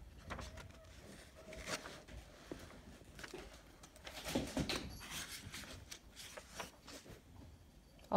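Workbook paper pages rustling and flapping as they are turned, with scattered faint knocks and distant faint voices in the background from cats playing and children playing outside.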